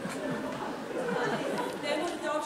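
Indistinct talking, with several voices overlapping.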